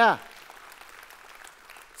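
A church congregation applauding: steady, fairly faint clapping that carries on after a brief spoken "yeah" at the start.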